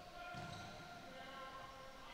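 Faint basketball court sound in a gym, with a soft low thud about half a second in over a faint steady tone.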